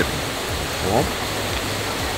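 Steady rushing of a waterfall close by: an even, unbroken water noise.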